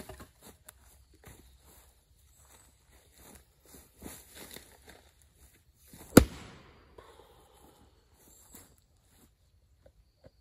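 A four-pound axe chopping into an oak round about six seconds in: one sharp, loud chop, the loudest sound, with a short ring after it. Before it, a smaller knock at the very start and light scuffing steps and rustling in dry leaves as the chopper lines up.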